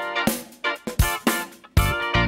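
Instrumental background music with guitar.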